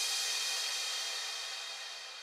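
The closing cymbal crash of an electro house track ringing out and fading away steadily after the final hits.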